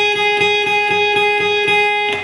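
Steel-string acoustic guitar playing a single note, the high E string fretted at the fourth fret (G-sharp), picked over and over at an even pace of about four to five strokes a second.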